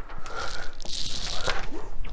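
A crinkling, rustling noise of packaging being handled, lasting about a second.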